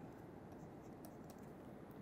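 Near silence with faint taps and scratches of a stylus writing on a pen tablet.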